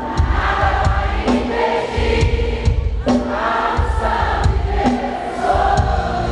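A live worship song: many voices singing together over an amplified band with a steady drum beat.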